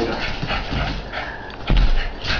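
A small Yorkie–Shih Tzu mix dog making noises as it plays during a zooming fit. There is a heavy thump about a second and three quarters in.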